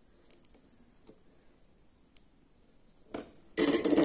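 A few faint ticks, then about three seconds in a click and a short, loud clatter of hard metallic objects: soldering tools being set down and handled on a workbench.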